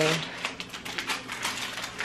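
A run of quick, irregular clicks and crackles as a plastic food packet is handled.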